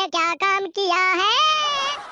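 High-pitched, sped-up cartoon character voice singing in a sing-song way: a few short notes, then a long drawn-out note that rises and falls.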